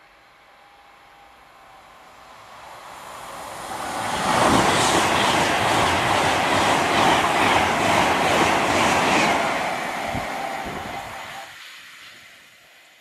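A Class 390 Pendolino electric train passes at speed. It builds over about four seconds to a loud rush of wheels on rail and air, with a rapid, regular beat of wheelsets running over the track, then fades away near the end.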